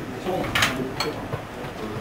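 Indistinct voices in a gym with a few short, sharp clicks and knocks, the clearest about half a second and a second in, as a loaded barbell is lifted out of a squat rack and walked back.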